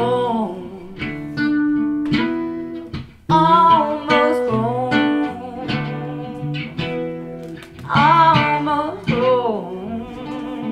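A woman sings over an acoustic guitar in a live acoustic duo. Her sung phrases come in at the start, again from about three seconds in, and once more near the end, with the guitar carrying on between them.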